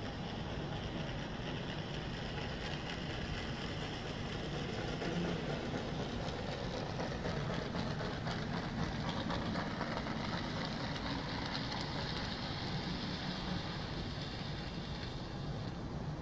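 Electric model train running on a layout's track: a steady whir and rumble that grows a little louder toward the middle.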